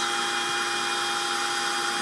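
Steady machine whir with a few constant whining tones from a running homemade CNC setup, holding an even level throughout.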